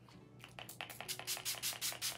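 Pump-bottle makeup setting spray misted onto the face in a rapid series of short hissing spritzes, about six a second.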